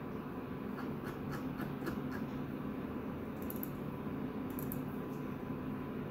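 A few scattered soft clicks of a computer mouse and keyboard over a steady low background hum.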